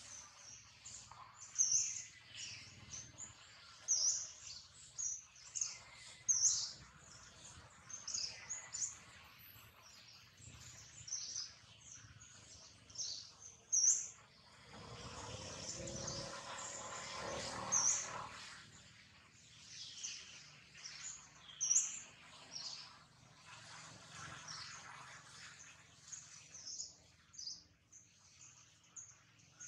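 Birds chirping in many short, high calls scattered throughout, the sharpest peaks being the loudest moments. About halfway through, a longer, lower sound runs for about four seconds beneath them.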